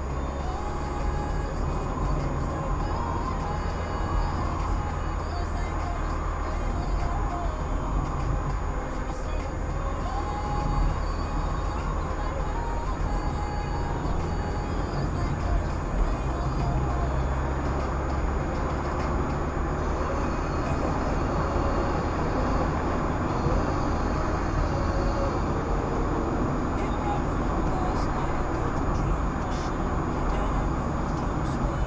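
Steady engine and road noise of a car driving, heard from inside the cabin, with indistinct talk and music mixed in underneath.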